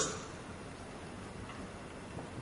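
Quiet lecture-hall room tone with a few faint clicks.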